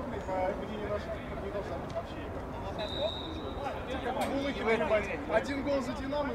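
Men's voices calling and chatting across an outdoor football pitch. A brief high steady tone sounds about three seconds in, and a few sharp knocks come near the end.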